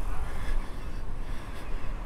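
Low, uneven rumble of street traffic on a town street, with no clear single event.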